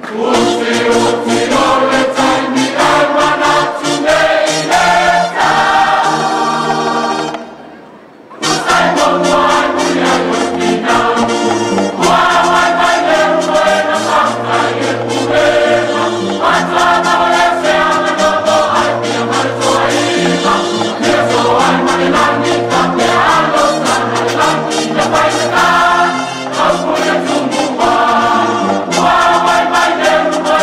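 Choir singing a gospel song over instrumental backing with a steady beat; the music drops away for about a second near eight seconds in, then picks up again.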